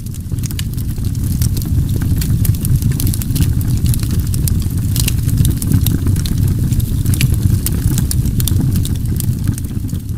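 Wood fire burning, with many irregular sharp crackles and pops over a loud, steady low rumble.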